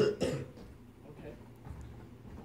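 A man coughing: two short, harsh coughs in quick succession within the first half second, followed by quiet.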